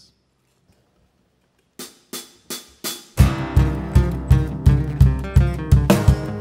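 A short hush, then four sharp taps counting the band in, and the acoustic band starts: strummed acoustic guitars over a steady, pulsing low beat on a cajon.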